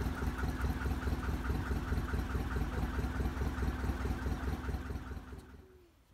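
Narrowboat engine running at cruising speed with an even, rapid chugging beat, fading away near the end.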